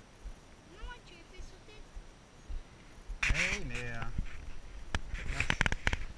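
A man's voice without clear words: a faint murmur about a second in, then a louder, drawn-out vocal sound about three seconds in. Near the end comes a quick run of sharp clicks and knocks from handling close to the microphone.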